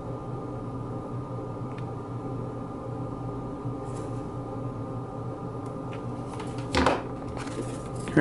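Steady low electrical hum of room tone, with a few faint ticks of a hot glue gun and a wooden model kit being handled, and one short louder scuffle about seven seconds in.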